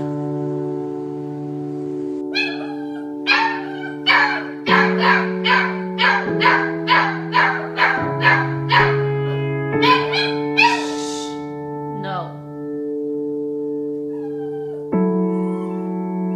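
Doberman barking in a quick run of about a dozen short barks, roughly two a second, ending in a brief falling whine, over steady piano background music.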